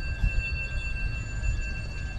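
Low, uneven wind rumble on the microphone as the camera moves, with a few faint steady high-pitched tones held underneath.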